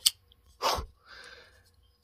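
Folding pocket knife flicked open, its blade locking with a sharp click right at the start. A short breathy rush of noise follows about two-thirds of a second in, then a fainter hiss.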